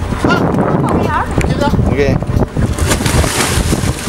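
Wind rumbling on the microphone over the sea, with a splash of water beside the boat about three seconds in as a swimmer goes into the water.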